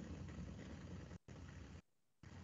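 Faint background noise with a low hum, dropping out to dead silence twice, as if gated.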